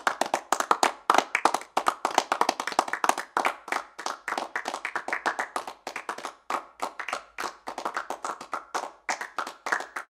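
Hands clapping: a fast, uneven run of sharp claps that stops suddenly at the end.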